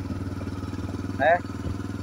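Motorcycle engine running steadily with an even low hum as the bike rolls along the road.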